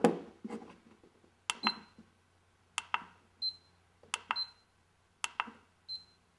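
Handheld laser distance meter being worked: a series of sharp button clicks, four of them followed by a short high beep as it takes readings of a wall's length.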